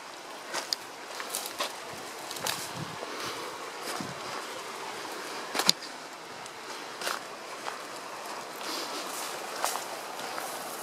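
Footsteps of people walking down a dirt and rock trail: irregular scuffs and crunches, with one sharper click a little past halfway, over a steady background hiss.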